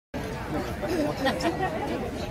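Several people chatting over one another at a food stall, with a laugh about a second in.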